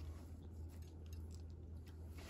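Quiet room with a steady low hum and a few faint soft clicks and rustles of fingers handling cherry-tomato halves and lettuce on a burger on a plate.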